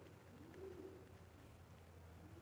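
Near silence: room tone with a low hum, and one faint, soft cooing call that rises and falls about half a second in, of the kind a pigeon or dove makes.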